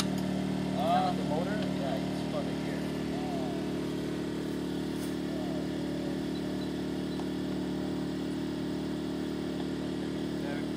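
A small engine running steadily at an unchanging pitch, with faint voices in the first few seconds.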